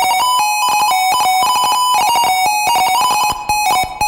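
A 1-bit PC-speaker square-wave tune, slowed down with added reverb. It is a fast, buzzy run of short notes stepping between a few pitches, with small clicks between the notes.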